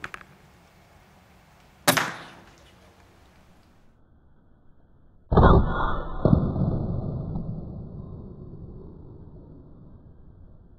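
Air rifle shooting: a single sharp crack about two seconds in. A little after five seconds a louder, duller hit follows with a second knock a second later, and it fades away slowly over several seconds.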